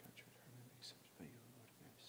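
A priest murmuring a prayer under his breath, faint and close to a whisper, with the hissing 's' sounds standing out more than the voice.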